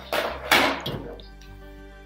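Packs of cards rustling and scraping against a bowl as they are handled, in two quick bursts in the first second, over soft background music.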